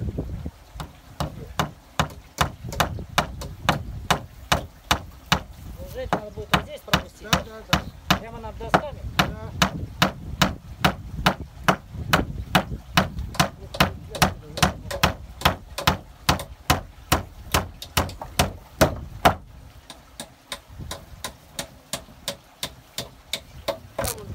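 A hammer driving nails into wooden boards: a rapid, even run of blows, about two to three a second, that breaks off about twenty seconds in, with a few more blows near the end.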